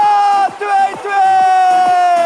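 A commentator's long, high-pitched shout celebrating a goal, held over a cheering crowd in a large hall.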